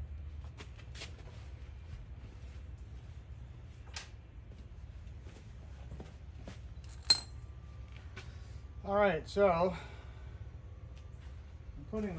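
A few light metal clinks from handling a steel D-ring tie-down and its bolt-on bracket, with one sharper click about seven seconds in, over a steady low hum. A brief voice sound comes about nine seconds in.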